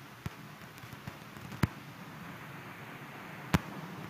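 Faint steady room hum broken by three short, sharp knocks, the loudest two about a second and a half and three and a half seconds in.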